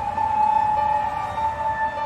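A long, high siren-like tone that wavers slightly in pitch, held over a low hissing rumble.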